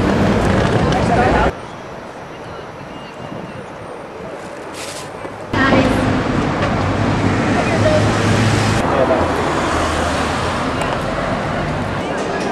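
City street sound: road traffic and people's voices, in spliced clips. It drops abruptly to a quieter stretch about a second and a half in, then jumps louder again at about five and a half seconds.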